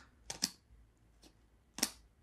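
Fidlock magnetic buckles on a backpack's roll top clicking as they are snapped and worked by hand: a quick pair of clicks early, a faint one midway and a sharper click near the end.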